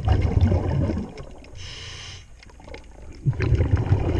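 A scuba diver breathing through a regulator underwater. A loud rush of exhaled bubbles comes first, then a short hiss of inhaling about two seconds in, then another rush of bubbles near the end.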